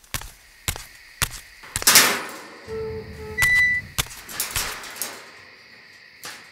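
Knocks and scrapes of a person handling a metal gate. There are several sharp clicks in the first second or so, then louder scraping sounds about two seconds in and again near the end.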